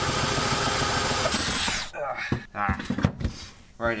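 Electric drill running steadily as a twist bit bores through the car's steel floor pan, cutting off about two seconds in. A few sharp knocks and a short mutter follow.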